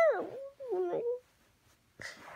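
A sleepy, grumpy toddler whining without words: two short whines, the first high and falling in pitch, the second lower and briefer.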